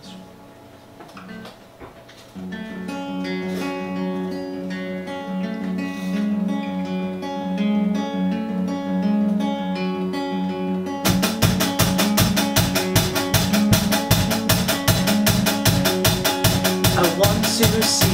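An acoustic guitar begins a song about two seconds in, playing picked notes. About eleven seconds in, drums come in with a steady, quick beat under the guitar.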